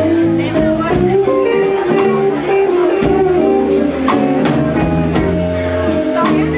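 Live blues band of electric guitars, bass guitar and drum kit playing a blues number with a steady beat, no singing.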